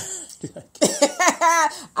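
A woman laughing: a sharp breathy burst at the very start, then a run of short laughs about a second in.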